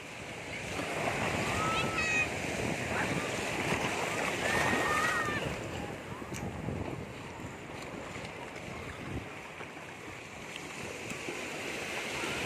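Sea waves washing in over shallow water at the shoreline, a steady rushing surf that swells over the first few seconds and then eases, with faint distant voices.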